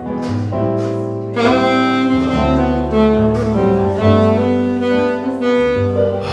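Alto saxophone playing a melody of held notes, accompanied by a Yamaha electronic keyboard with sustained low bass notes underneath.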